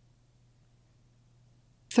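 Near silence: room tone in a pause between spoken sentences, with a woman's voice starting again right at the end.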